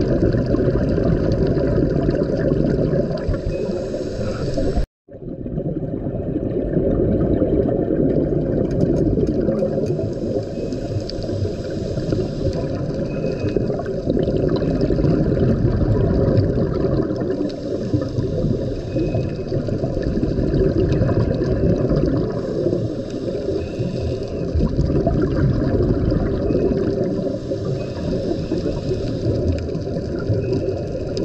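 Dull, muffled underwater rushing noise picked up by a camera's microphone beneath the sea, steady throughout. It cuts out for a split second about five seconds in.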